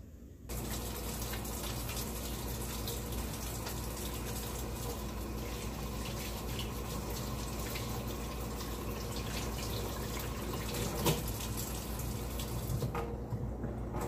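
Kitchen sink tap running in a steady stream while hands are washed under it. The water starts about half a second in, with a sharp knock about eleven seconds in, and the stream thins shortly before the end.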